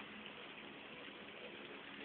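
Faint, steady hiss of food cooking on a tabletop grill pan.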